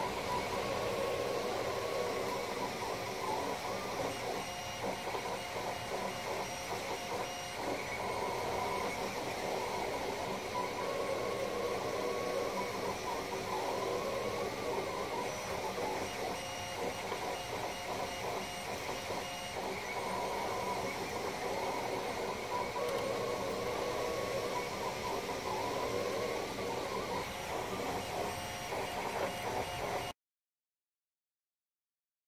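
Monoprice Select Plus 3D printer printing: the motors whine in shifting pitches as the print head moves back and forth, over the steady hiss of its cooling fans.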